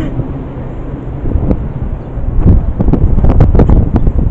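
Wind buffeting a body-worn camera's microphone outdoors, a loud low rumble, with rubbing and knocks from the camera being jostled in the second half.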